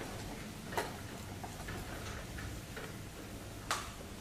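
A few light clicks and taps over a steady low room hum, the two sharpest about a second in and near the end.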